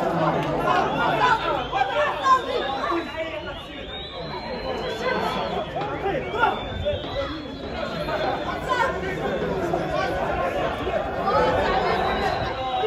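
Several voices talking and calling out over each other, the overlapping chatter and shouts of players and onlookers at a football match, with no one voice standing out.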